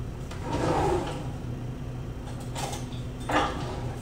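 A kitchen drawer sliding open with a scrape, then shut with two short knocks, off camera.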